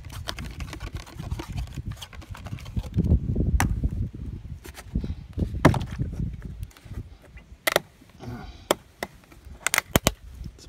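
Hands handling a cardboard oil filter box and a plastic motor oil jug: rustling and rumbling handling noise with a scatter of sharp clicks and knocks, then a few separate sharp clicks near the end as the jug's cap comes off.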